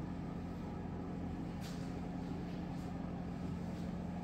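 Steady low mechanical hum, with a couple of faint soft ticks about one and a half and three seconds in.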